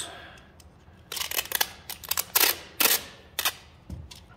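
Clear packing tape being pulled off its roll in a run of short, jerky rips, about seven of them over two and a half seconds.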